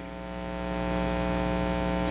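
Electrical mains hum in the sound system, a buzzy stack of overtones that swells over the first second and then holds steady.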